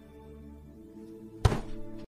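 Quiet music holding a steady chord, then a single sudden deep thud about one and a half seconds in that rings out briefly, in the manner of a dropped-in meme sound effect.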